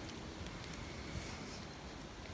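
Quiet outdoor background: a low, steady hush with a few faint ticks and no distinct event.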